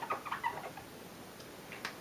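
Felt-tip marker squeaking briefly on the board as an arrowhead is drawn, in the first half-second, then quiet room tone.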